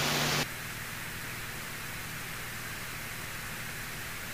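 Steady hiss of an aircraft radio and intercom audio feed between ATC transmissions, with a slightly louder burst in the first half second as a transmission ends.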